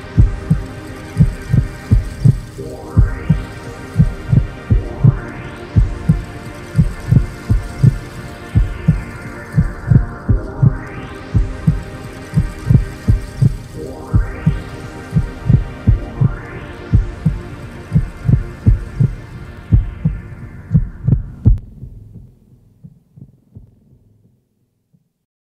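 Song outro: a deep heartbeat-like double thump repeating steadily under a sustained synth chord whose brightness sweeps up and down every few seconds. The chord cuts off near the end, leaving a few faint, fading beats.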